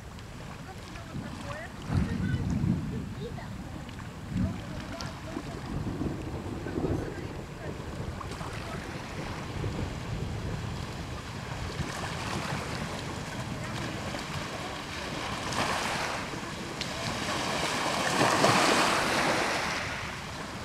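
Small waves washing onto a pebble shore, growing louder and loudest near the end. Wind gusts buffet the microphone with low bursts about two and four seconds in.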